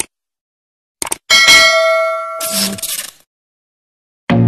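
Subscribe-button animation sound effect: mouse clicks, then a notification bell ringing. The bell fades out over about two seconds.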